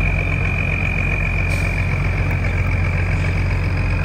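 A river cargo barge's diesel engine running steadily at close range as the barge passes: a deep, even drone with a steady high whine over it.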